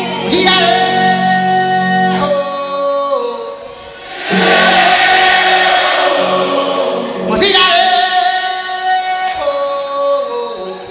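Live band with a choir-like group of voices singing a wordless chant in unison. Each phrase holds its notes and then slides down in pitch; there are two phrases, with a brief drop in loudness between them.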